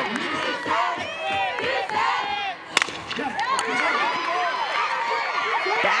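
Softball crowd cheering and shouting, many voices overlapping. There is a brief lull about two and a half seconds in, then a single sharp crack.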